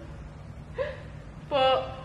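A woman's short voiced gasps of exertion, out of breath from a hard workout: a faint one just under a second in, then a louder, longer one about a second and a half in.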